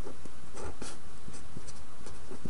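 Writing strokes from a pen on a writing surface: a few short, faint strokes over a steady background hiss.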